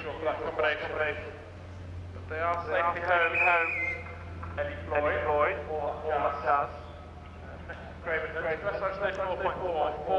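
A man's voice narrating, in several phrases with short pauses between them, over a steady low hum.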